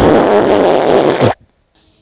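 A man blowing his nose hard into a bandana: one loud, long blow of about a second and a quarter that stops abruptly.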